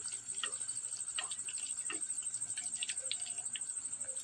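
A cricket trilling steadily in a rapid high pulse, with scattered crackles and pops of an eggplant cutlet frying in hot oil in a kadai.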